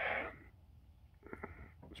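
A short, sharp exhale of breath right at the start, followed by a few faint clicks about a second and a half in.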